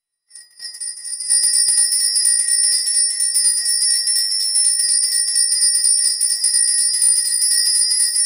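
Altar bells (a cluster of small Sanctus bells) shaken in a rapid, continuous jingle. They start a moment in and swell to full loudness within about a second. They mark the blessing with the monstrance at Benediction.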